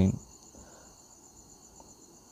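The end of a spoken word, then quiet background with a faint, steady, high-pitched pulsing whine, like insects chirring.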